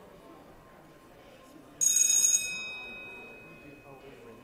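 A bell dings once about two seconds in, bright and loud for about half a second, then ringing out over the next two seconds. Beneath it is a low murmur of voices.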